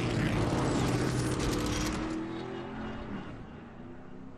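Racing engine roar used as a sound effect under an animated broadcast title: it comes in suddenly at full loudness, its pitch sinks slightly, and it fades away over the next few seconds.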